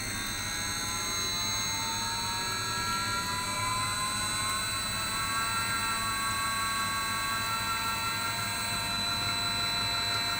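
Extruder drive motor under variable-frequency-drive control whining. Its pitch rises over the first few seconds as the drive's speed setting is stepped up, then it runs steady. A steady whirr of cooling fans sits underneath.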